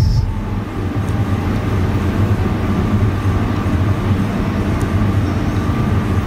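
A steady low rumble with a hum near 100 Hz, continuous and without distinct events.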